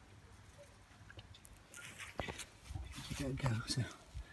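Faint wet squishing and crackling of Gelli Play gel worked by a child's hand in a plastic tub, followed about three seconds in by a child's voice.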